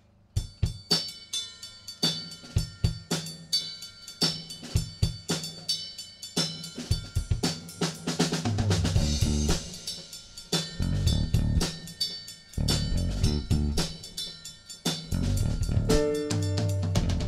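Live band playing the instrumental opening of a song. The drum kit starts just after the beginning with a steady beat of kick, snare and cymbals. An electric bass guitar fills out the low end from about halfway, and the full band plays from there.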